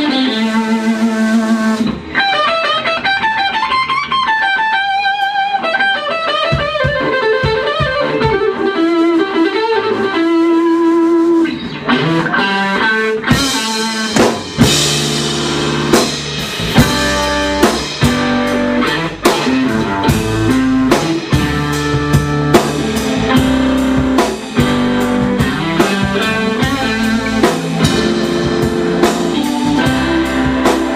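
Live blues-rock band playing a slow instrumental intro: electric guitar leads with bent notes over a sparse backing, then the drums and bass come in about halfway through and the full band plays a steady beat.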